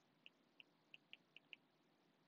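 Faint, sharp ticks of a stylus tapping on a tablet screen while handwriting, about seven in two seconds at an uneven pace.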